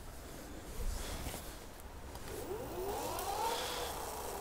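Varun Sleeper-S e-bike's 250 W motor whining as the throttle spins the wheel up with no load, the pitch rising for about a second and then levelling off near top speed with the speed limit now unlocked.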